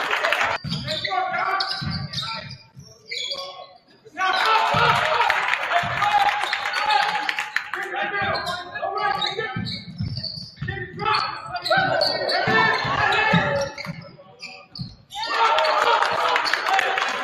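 Basketball bouncing on a hardwood gym floor during play, repeated low thuds, under the voices of players and spectators in a large echoing gym. The sound drops out briefly twice, about four seconds in and near the end.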